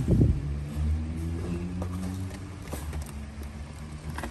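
A low, steady machine hum runs throughout, with a thump right at the start and a few faint knocks as the cardboard tool box is handled.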